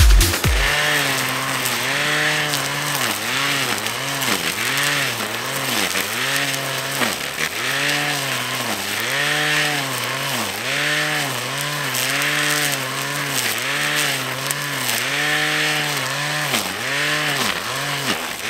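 Small two-stroke petrol grass trimmer (brushcutter) cutting long grass. Its engine pitch rises and falls over and over, roughly every second, as the load comes on and off with each sweep.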